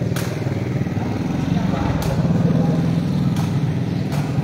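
A steady low engine hum with a fast even pulse, over which a rattan sepak takraw ball is kicked with three sharp knocks: one at the start, one about two seconds in and one past three seconds. Faint voices murmur underneath.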